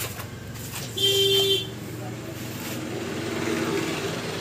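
A single short horn toot, about half a second long, comes about a second in over a steady low background rumble.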